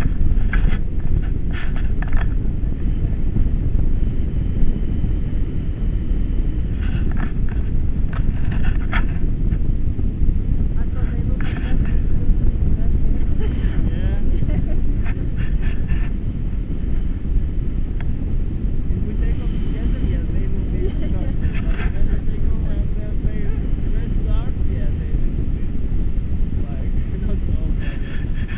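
Wind rushing over an action camera's microphone in paragliding flight: a loud, steady low rumble with occasional short crackles.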